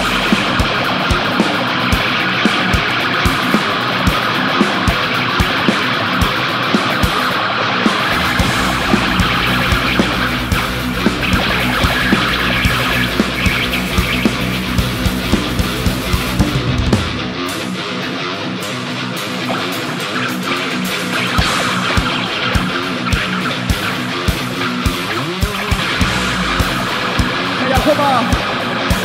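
Live heavy rock band playing an instrumental passage: distorted electric guitars over bass and drums, with a steady beat of sharp drum hits. The low bass drops out for a few seconds about two-thirds of the way through, then returns.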